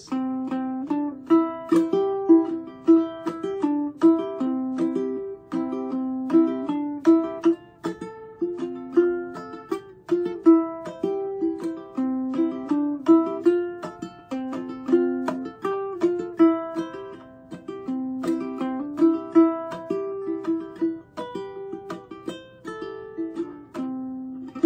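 Solo ukulele playing the melody of a familiar tune in clawhammer style: a steady run of single plucked notes with a natural syncopation.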